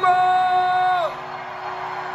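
A singer's voice through the PA holding the song's final note, which bends down and stops about a second in; crowd cheering and whooping follows.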